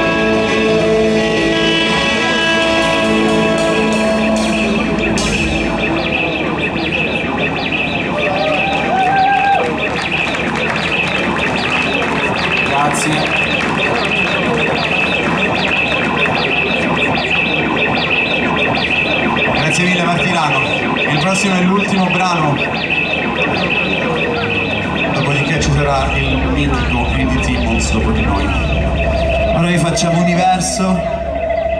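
Electric guitars run through distortion and effects pedals, held in long sustained feedback drones with a steady high tone and warbling, wavering pitches, as a live rock band's noisy outro with no drumbeat. A low bass drone drops out about six seconds in and comes back near the end.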